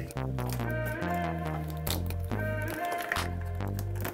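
Background music: a bass line of held notes changing pitch under plucked guitar notes.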